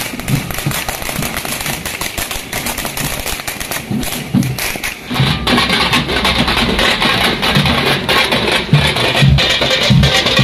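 A string of firecrackers going off in rapid crackling pops for about five seconds, then a band of procession drums (large side drums beaten with sticks) playing a driving rhythm.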